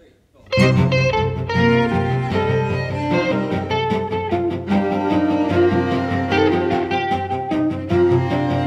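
Electric guitar and a string quartet of two violins, viola and cello playing an instrumental opening together, starting suddenly about half a second in.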